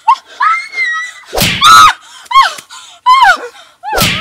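A woman crying out and screaming in pain after a slap to the face: a string of short wailing cries, the loudest about a second and a half in.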